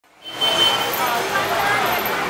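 Outdoor street crowd ambience: many distant voices talking at once over a steady background of street noise, with a short high steady tone near the start.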